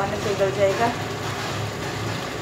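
Chicken frying in masala in an open pressure cooker, giving a steady sizzle, with a woman speaking briefly over it in the first second.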